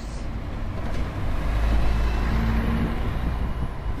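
City bus driving past close by, its engine rumble and road noise swelling to a peak about two seconds in, with a steady engine hum, then easing off.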